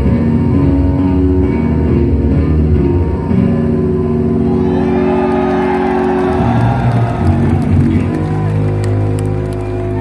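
Electric bass guitar played live through a loud concert rig, holding long, sustained low notes. The crowd cheers and whistles briefly about halfway through.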